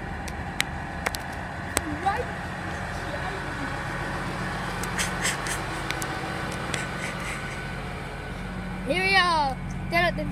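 Steady low hum of a Great Western Railway diesel train standing at the platform with its underfloor engines idling, with scattered light clicks. A man's voice comes in near the end.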